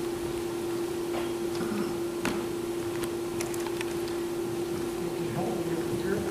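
A steady electrical hum held at one pitch, with a few faint scattered clicks and rustles.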